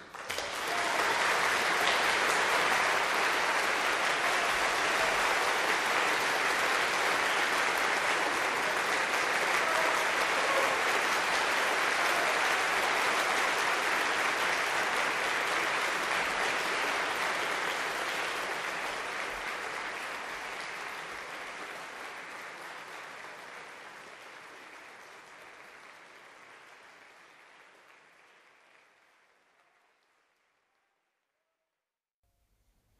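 Concert audience applauding the moment the piano stops; the applause holds steady for about fifteen seconds, then gradually fades away.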